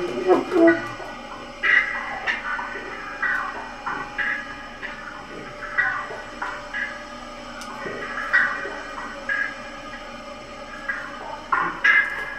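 Free-improvised live music: a saxophone's wavering phrase dies away just after the start. Sparse short sounds follow over a faint steady drone, and a louder burst of sound comes near the end.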